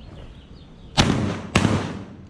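Two shotgun shots about half a second apart, each followed by a short echo.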